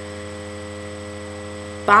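Steady electrical mains hum made of several constant tones, the only sound through a pause in talk, until a woman's voice starts again near the end.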